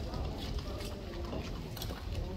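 Boxers' feet stepping and shuffling on the ring canvas, with a few short, sharp taps scattered through the moment.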